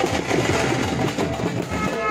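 Aerial fireworks crackling and popping in a dense, continuous run, over loud festive band music.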